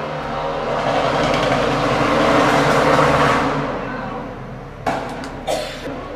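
A road vehicle passing by, its rushing noise swelling to a peak about halfway through and then fading away. A couple of sharp clicks follow near the end.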